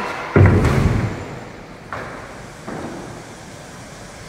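A heavy, deep thump about half a second in, followed by two fainter knocks over steady workshop noise.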